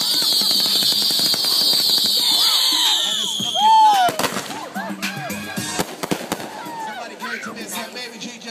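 Fireworks going off: a high whistle slowly falls in pitch for about four seconds over rapid crackling and ends in a loud bang. After it come scattered crackles and short whistles.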